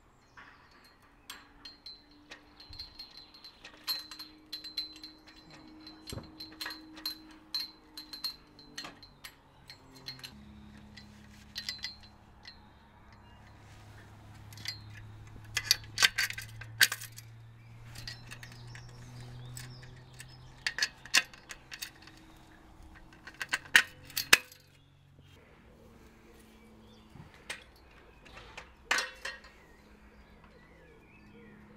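Aluminium ladder sections and metal fittings clinking and knocking together as a conservatory roof ladder is assembled, with bolts and brackets being fitted. The knocks come irregularly, with louder clatters a little past the middle, and again around twenty-four and twenty-nine seconds.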